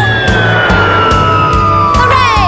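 Children's song backing music with a steady beat, overlaid by a cartoon rocket-landing sound effect: a long, slowly falling whistle with a rushing hiss.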